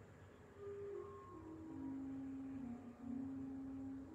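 Soft organ music: a slow line of held notes starting about half a second in and stepping down in pitch.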